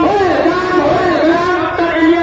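A man's raised, high-pitched voice calling out in a continuous, sing-song way, like slogan chanting at a street procession, with crowd noise under it.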